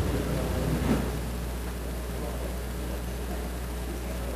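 Room tone: a steady low hum under a light even hiss.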